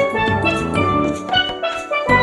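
Instrumental music: a quick melody of short, bright pitched notes over a pulsing bass beat.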